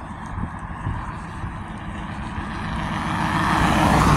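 A car approaching along the road, its tyre and engine noise growing steadily louder.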